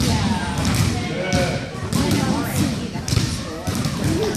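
Basketballs bouncing on a gym floor, with children's voices chattering throughout.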